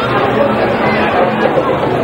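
Football stadium crowd: many spectators' voices chattering and calling over one another in a steady hubbub.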